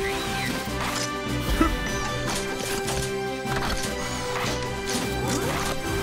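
Cartoon robot-transformation sound effects over action music: a string of mechanical clanks and whooshes as the rescue vehicles fold into robots, the loudest hit about one and a half seconds in.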